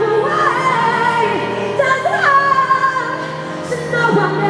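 A female pop singer singing live into a microphone over a band's accompaniment, holding long notes that bend in pitch at each change.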